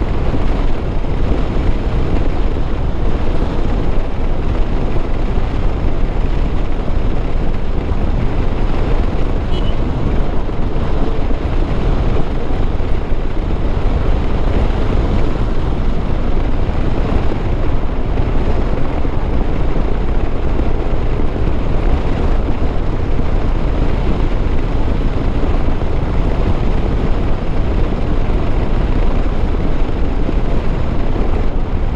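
Steady wind rushing over the microphone of a Honda H'ness CB350 ridden at road speed, heaviest in the low end, with the bike's single-cylinder engine running underneath at a constant pace.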